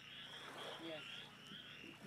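Faint chorus of frogs calling, a steady high-pitched pulsing trill.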